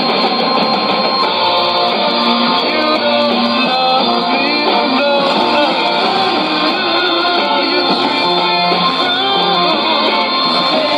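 Guitar-based pop music from a shortwave AM broadcast on 9510 kHz, received on a Sony ICF-2001D portable receiver. It plays continuously and sounds dull and muffled, with no treble above about 5 kHz.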